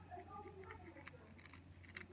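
Near silence: faint soft clicks of fingers handling a cigarette and its filters, with faint muttered speech in the first half second over a low steady hum.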